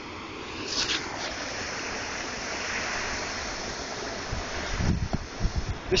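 Steady rush of white water churning over rocks. Near the end, low buffeting of wind on the microphone joins in.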